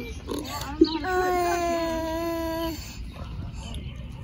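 One long held vocal note, steady and falling slightly in pitch, beginning about a second in and lasting under two seconds, with quieter voices underneath.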